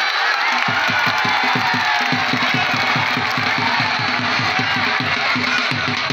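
Dhol drum beaten in a fast, even rhythm, starting under a second in, over a crowd of men shouting and cheering.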